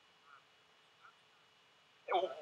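Near silence, with two very faint, brief blips about a third of a second in and about a second in.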